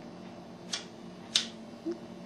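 Cigarette lighter being struck twice: two short sharp clicks about two-thirds of a second apart, over a faint steady hum.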